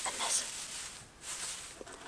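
Pink shredded-paper box filler rustling as it is pulled up out of a cardboard box, with a short break about halfway through.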